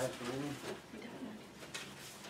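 Faint rustling and crinkling of large paper sheets being handled, with a couple of light crackles just before the end.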